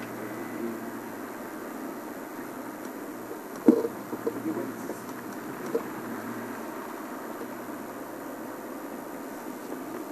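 Game-drive vehicle's engine running steadily, with a single sharp knock about three and a half seconds in and a lighter one a couple of seconds later.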